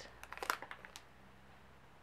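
Faint handling noise: a few light crinkles and clicks in the first second as a large polished fluorite piece is turned in the hands among plastic-bagged stones. After that there is only quiet room tone with a low steady hum.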